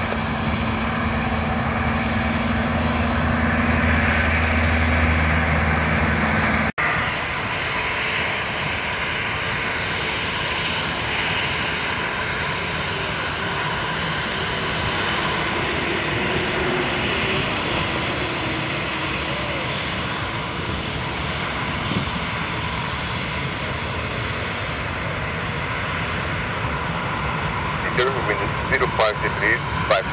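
Jet engine noise of an easyJet Airbus A320-family airliner slowing on the runway after landing, a loud, steady low rumble that swells slightly and then cuts off abruptly about seven seconds in. It is followed by the steadier, lighter whine and hiss of a KLM Boeing 737's engines as it taxies past close by, with radio voices coming in near the end.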